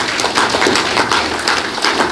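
Audience applauding: many hands clapping at once.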